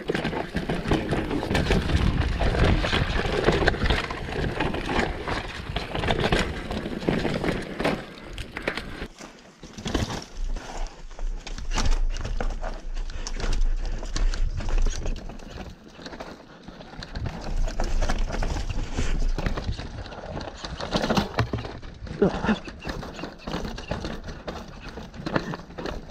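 Mountain bike riding down a rocky dirt downhill trail, with tyres, chain and suspension rattling and clattering constantly over rocks, under wind rushing on the bike-mounted camera's microphone. The sound dips briefly about ten seconds in, then the rattling resumes.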